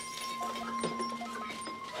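Synthesized electronic sound effect: two steady held tones, one low and one higher, with faint scattered short bleeps. It is the peculiar noise of the junk-mail robot materialising inside the TARDIS.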